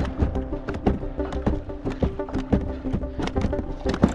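Background music with held notes and a steady run of percussive knocks.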